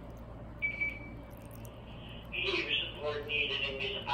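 Water trickling from a plastic jug onto seedling soil. A brief high beep sounds about half a second in, and a voice talks from about two seconds in.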